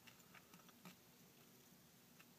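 Near silence with a few faint, soft clicks.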